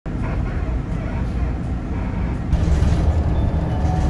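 Inside a moving city bus: steady low engine and road rumble, growing louder with a steady engine hum about two and a half seconds in.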